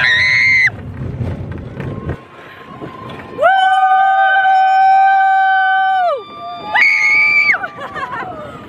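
Roller-coaster riders screaming: a short high scream at the start, a long held scream from about three and a half to six seconds in, and another short high scream near the end. A low rumble from the moving train runs under the first two seconds.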